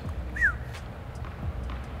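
Quiet pause on an indoor hard tennis court: a low steady hum from the hall, one short falling squeak about half a second in, and a few faint taps.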